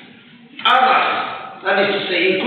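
A man's voice speaking. It resumes about half a second in, after a brief pause.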